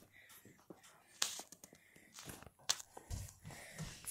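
Faint rustling and handling noise, with scattered light clicks and taps and a couple of soft low thumps near the end.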